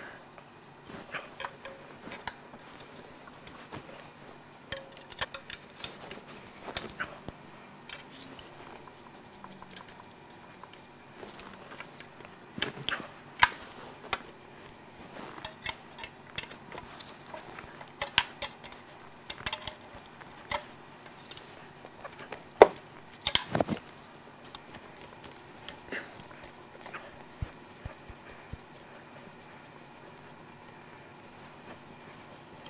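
Wrenches and other hand tools clicking and clinking on a diesel engine's metal fuel injector lines and fittings as they are loosened for removal. Irregular sharp clicks, busiest and loudest in the middle.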